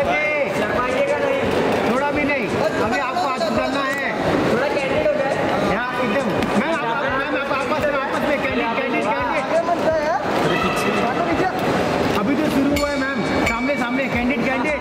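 Several people's voices talking and calling out over one another without pause, too jumbled for any words to come through.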